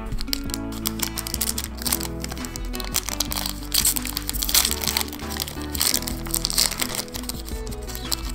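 A foil Yu-Gi-Oh! booster pack wrapper crinkling and crackling as it is handled and torn open, loudest about halfway through, over steady background music.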